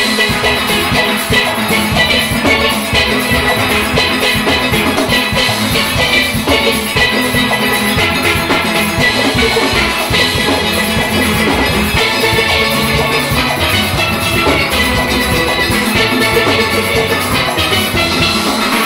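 A full steel orchestra playing live: many steelpans of different ranges together, with drums keeping a steady beat.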